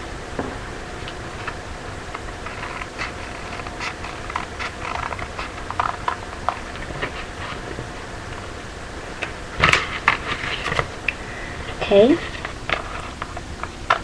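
Scissors cutting paper: irregular short snips and paper rustle as the blades work along a drawn outline, with one louder sharp knock just under ten seconds in.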